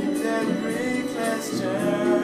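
A man singing a slow swing ballad over a karaoke backing track, with long held notes near the end.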